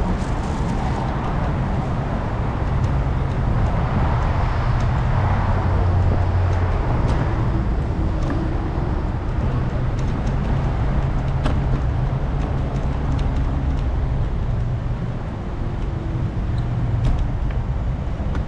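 Steady city-street traffic: cars running and passing on the road alongside, a continuous low rumble that swells a little around five to seven seconds in, with scattered light clicks.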